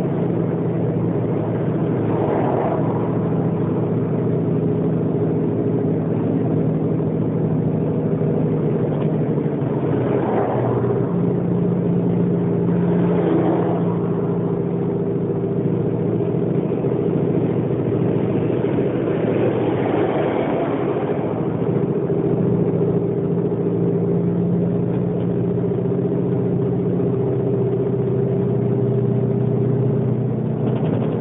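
Cab-interior sound of a 2008 Mercedes-Benz Actros 2546 truck driving along at a steady pace: a continuous engine drone with a steady low hum. A few brief swells of higher noise come through about 2, 10, 13 and 20 seconds in.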